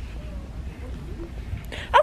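Steady low rumble of a shop's background with a few faint, brief voice-like sounds; a woman's voice starts near the end.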